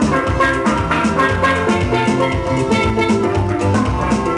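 Steel pans played with mallets in a quick run of ringing, bell-like notes, with drums and bass underneath.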